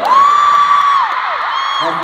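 A nearby fan lets out a long, high-pitched scream that rises, holds for about a second and falls away, then a shorter second scream near the end, over a large crowd screaming and cheering.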